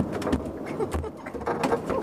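Irregular clicks and knocks from fishing rod and reel tackle being handled on a boat, with a few low thumps.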